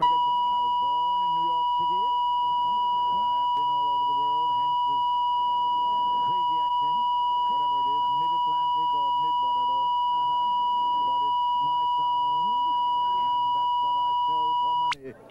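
A loud, steady electronic test tone, a pure beep-like sine, starting abruptly and holding one pitch throughout, laid over faint, muffled conversation beneath it.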